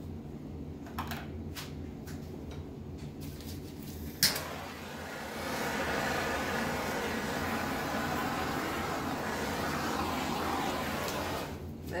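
A handheld butane torch clicks alight about four seconds in, and its flame hisses steadily over the wet acrylic paint for about seven seconds before it shuts off shortly before the end.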